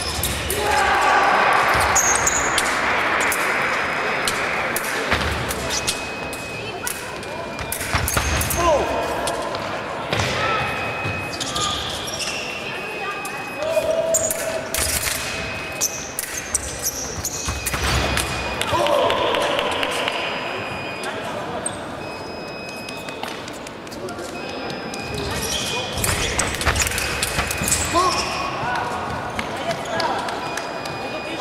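A fencing bout in a large hall: footsteps and stamps thump on the wooden floor, and sharp clicks of blades meet through the exchanges. Voices and shouts come in several short bursts, echoing in the hall.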